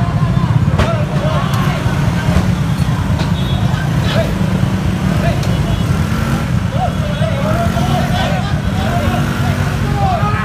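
Motorcycle engine idling close by in stopped traffic, a steady low rumble, with several people's voices calling out over it, more of them near the end.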